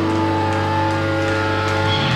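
Live rock band playing loud, droning music: electric guitar and keyboard hold long sustained notes over a steady low drone, with the low note changing right at the end.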